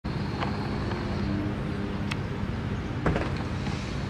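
Steady low rumble of road-vehicle noise, with a few faint clicks.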